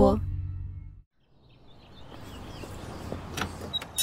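The last sung note of a jingle and its bass fade out in the first second. After a brief silence, a coffee-machine sound effect builds as a rush of noise that grows steadily louder, like an espresso machine brewing a cup.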